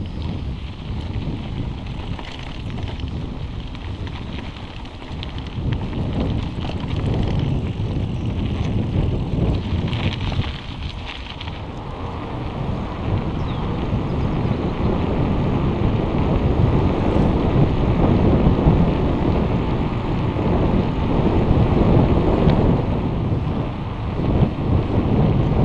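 Wind buffeting an action camera's microphone on a moving mountain bike, mixed with tyre rolling noise, first on a dirt trail and then on a paved path. It is a steady rumbling rush that gets louder in the second half.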